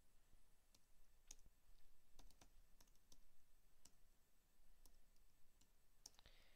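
Faint, irregular clicks of a computer keyboard as digits are typed.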